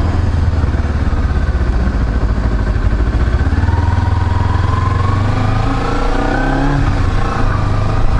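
Kawasaki Ninja 250R parallel-twin engine running while under way. Through the middle the engine note climbs steadily as the bike accelerates, then falls away about a second before the end.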